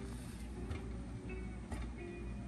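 Quiet background music with plucked guitar, and a couple of faint taps.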